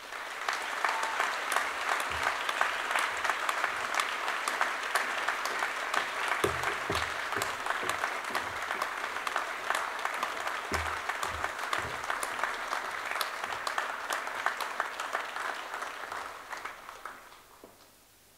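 A large audience applauding steadily: dense, continuous clapping that fades out near the end.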